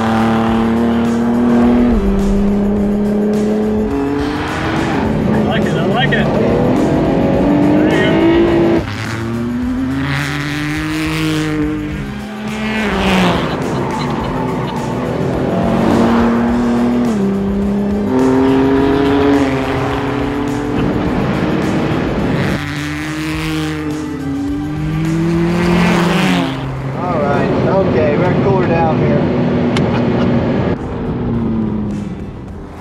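Ford GT's twin-turbo 3.5-litre EcoBoost V6 driven hard on a hot lap, its revs climbing and dropping again and again through the gear changes.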